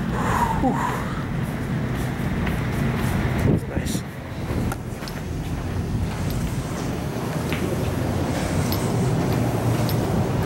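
Steady, loud drone of large air-handling and pumping machinery in a basement machine room, a constant low hum under a wash of fan noise.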